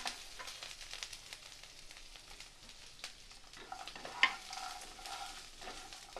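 Crisp fried soya chunks tipped into a hot kadhai of mustard-seed and green-chilli tempering and stirred with a wooden spatula: light sizzling with the chunks clattering and scraping in the pan, and a sharper knock about four seconds in.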